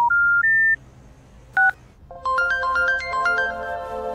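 A mobile phone call ends with three short electronic tones stepping up in pitch, followed by a single short beep. About two seconds in, an electronic phone ringtone melody of quick stepping notes starts and keeps repeating.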